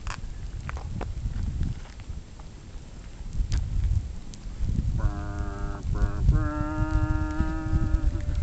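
Wind rumbling on the microphone with a few faint crackles. About five seconds in a steady pitched tone, like a horn, sounds twice briefly and then holds for nearly two seconds.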